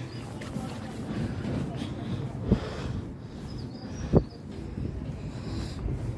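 Footsteps on a wooden plank walkway, with two sharper thumps about two and a half and four seconds in.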